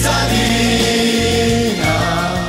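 A man singing long held notes over an instrumental backing with a steady bass line.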